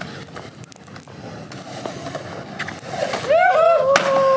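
Skateboard wheels rolling over concrete. About three seconds in, onlookers start whooping, with one long drawn-out 'ooh'. Near the end there is a single sharp clack as the skateboard lands on the bowl floor after the drop.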